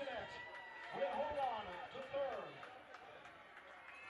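Faint, indistinct voices talking in the background, fading to a low ambient hush in the last second or so.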